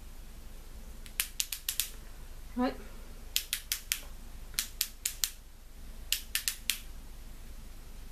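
Essence Stay Natural concealer pen's click mechanism being pressed repeatedly to prime it on first use, four rapid bursts of four or five sharp clicks each. The product has not yet come through to the tip.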